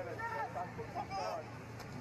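Faint voices over a steady low hum.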